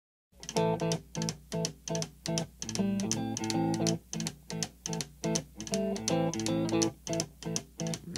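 Blues-rock recording opening with a lone electric guitar playing a choppy boogie riff, the notes clipped short, with sharp ticks keeping a steady beat. It starts a moment after brief silence.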